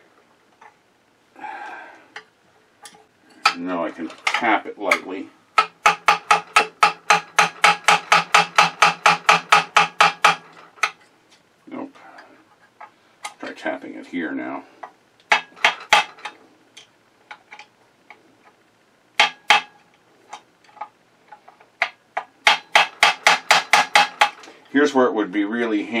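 A mallet repeatedly tapping a metal punch against a seized part of a vintage sewing machine to drive it loose. The blows come about four a second, each ringing with a metallic tone, in a long run and then a shorter one, with a few single blows between.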